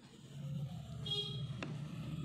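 A motor vehicle's engine running steadily, with a short horn toot about a second in and a couple of sharp clicks.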